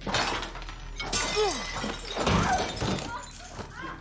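Crashes and something shattering in a violent struggle, with a woman crying out in short falling wails.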